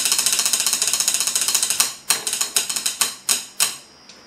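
Wooden sticks drumming a fast mock drum roll on an aluminum lure mold, breaking into slower, separate strikes about halfway through and stopping just before the end.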